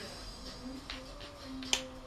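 Quiet handling of glass nail polish bottles: a few light clicks, the sharpest near the end.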